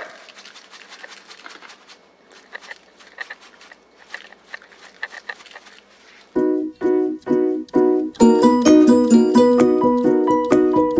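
Quiet, irregular clicking and crackling of a pepper grinder being turned over an open plastic bag. About six seconds in, background music with sharply struck, plucked-sounding notes starts and becomes much louder.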